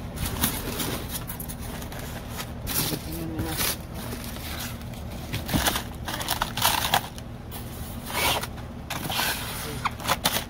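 Styrofoam packaging and plastic wrap being handled, rustling and scraping in irregular bursts.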